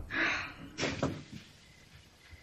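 A door being handled: a short rush of noise, then a few sharp clicks and knocks, like a latch and the door moving in its frame.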